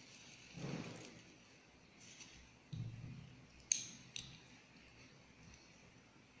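Soft rustling and handling of a paper wipe as bare optical fiber is wiped clean, with a sharp click a little past the middle and a fainter click just after it.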